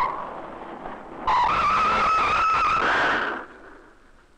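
Car tyres screeching in a hard skid: a sudden, loud, high, nearly steady squeal starting just over a second in and lasting about two seconds before cutting off.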